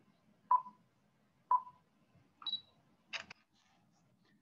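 Stop Motion Studio's self-timer counting down, heard over a Zoom call: short beeps once a second, a higher-pitched final beep, then a double shutter click as the frame is captured.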